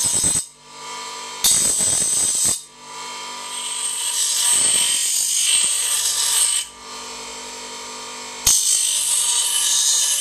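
Bench grinder running while a steel half-tube is pressed against the wheel to grind off its chrome plating. There are several spells of hissing grinding, the longest lasting about four seconds. In the short gaps between them the motor runs on its own with a steady hum.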